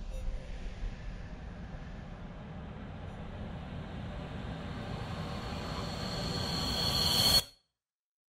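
A rumbling noise with a high, shrill whine that swells louder and louder, then cuts off abruptly into silence about seven and a half seconds in.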